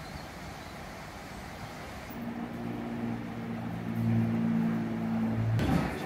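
Steady outdoor background noise, then from about two seconds in an engine running steadily with a low hum, cut off suddenly near the end.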